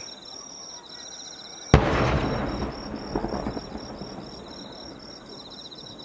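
An aerial firework shell bursting: one sharp boom about two seconds in, followed by a rumbling echo that fades over about two seconds. Insects chirp steadily in a pulsing pattern throughout.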